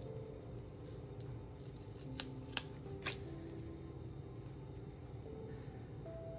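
Light clicks of stickers being handled with metal tweezers on a paper planner page, three sharp ticks about two to three seconds in, over soft background music.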